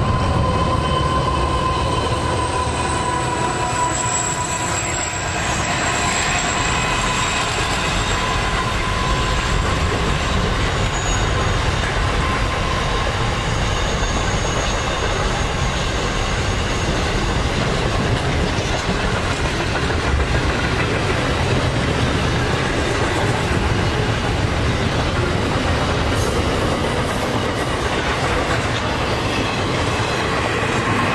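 Container freight train led by NR class diesel-electric locomotive NR6, its loaded container wagons rolling close by with a steady rumble and clickety-clack of wheels over the rail joints. A thin high squeal sounds in the first several seconds.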